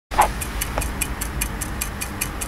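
Clock-style ticking sound effect, about five even ticks a second, over a low steady hum, opening with a short hit.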